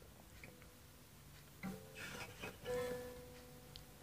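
Faint acoustic guitar: after a second and a half of near silence, a few quietly plucked notes, one ringing on for about half a second.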